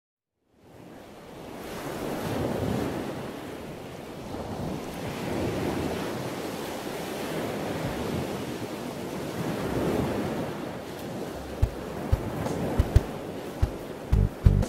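Sea waves washing in a steady surge, swelling and ebbing about every three to four seconds. A few short low thumps come in near the end.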